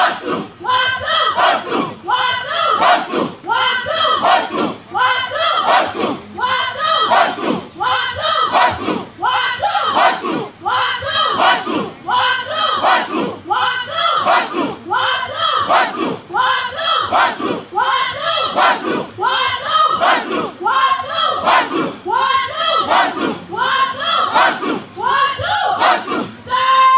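A large group of recruits chanting a military cadence in unison while jogging in formation, one phrase about every second. Their feet strike the ground in time with the chant.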